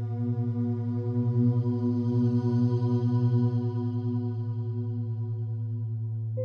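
Binaural-beat meditation music: a sustained low drone with a stack of overtones, wavering in a fast, even pulse that grows louder through the middle and then eases back.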